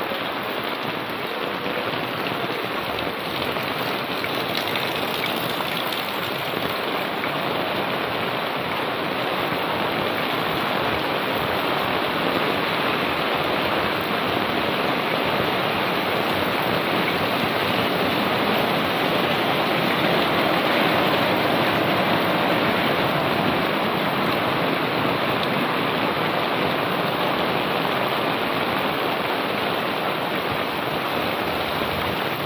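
Heavy rain drumming steadily on an umbrella canopy overhead and splashing on the wet street, a dense even hiss that swells a little midway.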